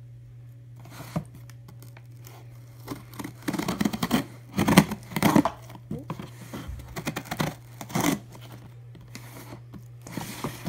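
A cardboard shipping box being pulled open by hand: uneven bursts of tearing and crinkling packaging, loudest in the middle, over a steady low hum.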